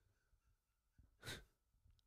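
Near silence, broken about a second in by one short, soft breath out from a man at the microphone.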